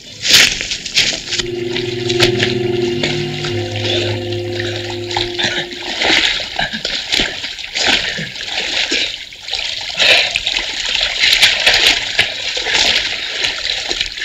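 Water splashing and sloshing as two people wade and scramble out of a river onto the bank. A low held chord sounds through the first few seconds.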